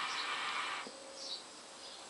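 A draw on a hookah: air rushing through the hose and bubbling through the water base. It stops with a small click a little under a second in, leaving a faint background with a few small high chirps.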